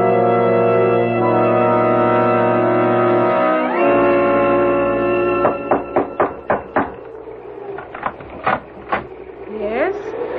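Organ-like radio-drama bridge music: a held chord for about three and a half seconds, then a rising slide into a higher held chord. From about five and a half seconds a run of sharp, short knocks follows, about a dozen over three and a half seconds. Near the end comes a rising creak, a door swinging open.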